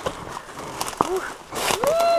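Footsteps and rustling of leaves and branches as someone pushes through dense undergrowth on leaf-littered ground, with a brief vocal sound about a second in and a voice starting near the end.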